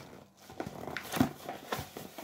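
A white plastic mailer bag rustling and crinkling as it is handled, in a series of short, scattered crackles.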